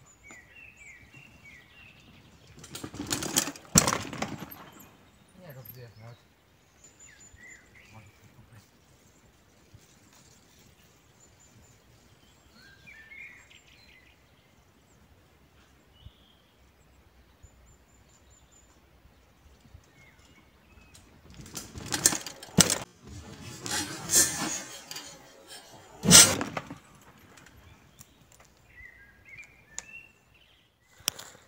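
A bicycle ridden down a sandy forest track and over a dirt jump, passing twice: a short rush of tyres on sand with a sharp knock a few seconds in, and a longer rush near the end with two sharp knocks. Small birds chirp faintly in the quiet between.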